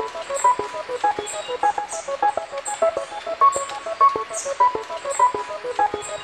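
Live band music in a sparse passage: a repeating figure of short, clipped pitched notes over a light, regular ticking like a hi-hat, with no bass underneath.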